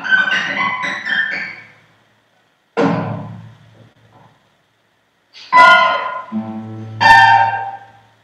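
Four classical guitars playing a microtonal piece. A quick flurry of plucked notes comes first, then a single chord about three seconds in that rings away into silence. Near the end come two sharp struck chords with a low note held beneath them.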